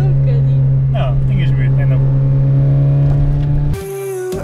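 A small race-prepared hatchback's engine heard from inside the cabin, running at steady revs on track. It cuts off suddenly near the end.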